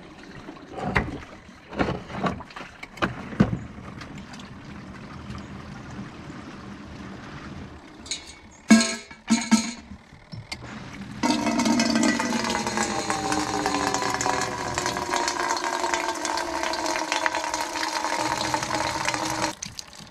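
Rainwater running from a rain barrel's spigot into a metal kettle. It starts about halfway through as a loud, steady splashing with faint tones in it, and stops just before the end. Before it come a few scattered knocks and clicks of handling.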